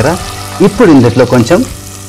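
Green chillies and ginger-garlic paste sizzling in hot oil in a pot while being stirred with a spatula. A voice sounds over the frying, loudest in the middle.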